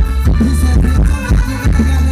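Live Thai ramwong dance music from a band, loud, with a heavy low drum beat about twice a second under held melodic tones.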